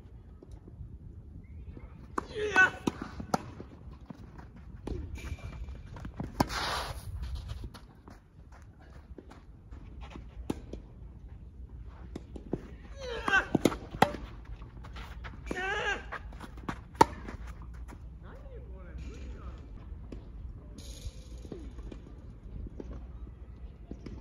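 Tennis rackets striking the ball during play, sharp pops a few seconds apart, with short shouts and calls from the players at several moments.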